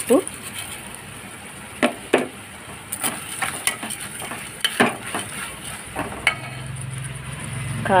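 Onions, tomatoes and peppers sizzling in oil in a metal pot while a steel spoon stirs them, knocking and scraping against the pot a dozen or so times.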